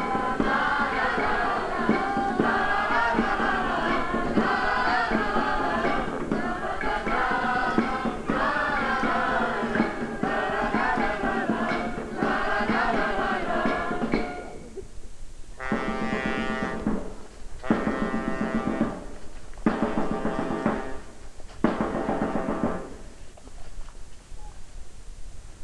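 A choir of many voices singing together. About fifteen seconds in, the singing breaks into four short held phrases with pauses between them.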